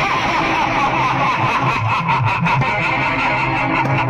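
A steady, loud din of a festival crowd and fireworks, with a run of sharp firecracker crackles about halfway through.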